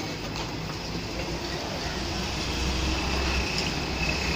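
A heavy diesel truck engine rumbling at low speed, growing louder as it approaches, over steady street traffic noise.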